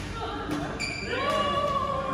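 Echoing sounds of an indoor badminton court between points: shoes scuffing and squeaking on the court floor, and a voice calling out a long, held note in the second half.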